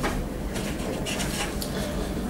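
Faint rustles and light clicks of a book being handled and its pages turned, a few short sounds spread across the two seconds, over a low steady hum in the room.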